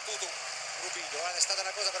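Televised football match audio: steady stadium crowd noise, with a man's voice speaking briefly about a second and a half in.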